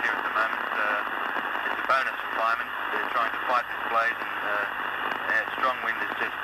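A man's voice speaking over a crackly telephone line, thin and hard to make out, with a steady hiss of line noise behind it.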